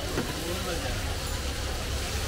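Chicken chops sizzling steadily in shallow oil in a wide flat pan, under the chatter of voices and the rumble of street traffic.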